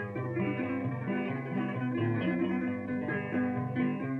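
Instrumental punto guajiro accompaniment: guitar and other plucked strings play a steady rhythmic run of short notes between sung lines of a décima.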